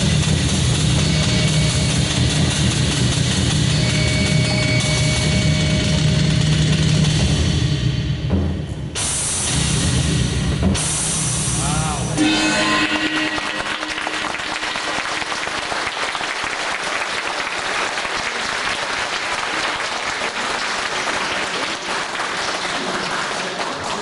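Stage show music with a heavy drum beat, closing in two loud sustained crashes about halfway through. Then an audience applauding steadily.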